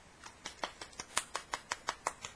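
A quick, irregular run of light clicks and clacks, about a dozen in under two seconds, as small craft supplies are rummaged through on a tabletop.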